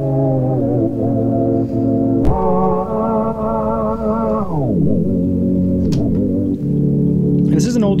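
Slow cassette playback of acoustic-guitar sound-design samples on a C1 Library of Congress player, sustained and slightly wavering in pitch. About two seconds in, the pitch jumps up with a click. A couple of seconds later it glides down, then settles lower, as the variable speed control is slid. There is a bit of wobble from the very slow tape speed.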